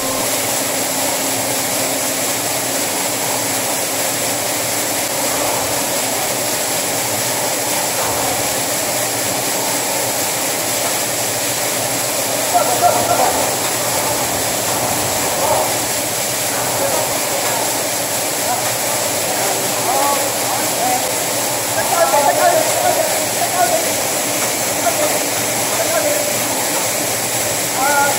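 Grain-handling machinery running steadily, an auger conveyor feeding paddy rice toward a grain dryer, with people talking now and then in the middle and later part.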